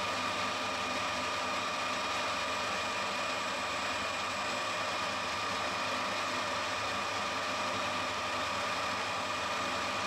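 Metal lathe running at a steady speed, its chuck spinning a turned workpiece, with a constant whine from the drive over the even machine noise.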